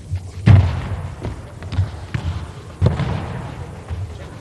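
A handball and players' feet thudding on a wooden sports-hall floor: about six irregular thumps, the loudest about half a second in and near three seconds, each echoing in the large hall.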